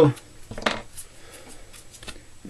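A few light clicks and taps from small fly-tying tools being handled, the sharpest about two-thirds of a second in.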